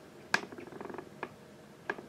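A few sharp, quiet clicks: one about a third of a second in, then faint rapid ticking for about half a second, and two more single clicks later.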